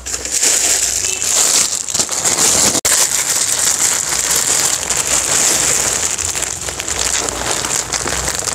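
Clear plastic wrapping around a bundle of packed shirts crinkling and rustling steadily as it is picked up and handled.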